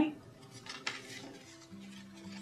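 Cardstock greeting cards being handled and swapped on a craft mat: a couple of faint, brief rustles in the first second. Soft background music with low held notes comes in during the second half.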